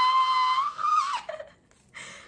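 A woman's voice holding a high-pitched squeal on one steady note, which slides down and breaks off just over a second in. A short moment of silence follows.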